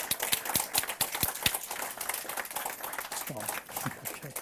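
Audience applauding, a dense patter of many hands clapping, with a voice heard briefly near the end.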